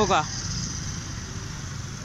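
Low, steady rumble of street traffic at a crossroads, after the end of a spoken word just at the start.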